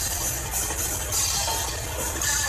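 Death metal band playing live, heard from the crowd as a loud, dense wash of distorted guitars and cymbals over a steady low rumble.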